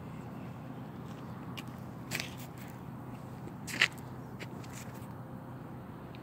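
Scattered footsteps or scrapes on gravel, with two sharper clicks about two and four seconds in, over a steady low outdoor hum.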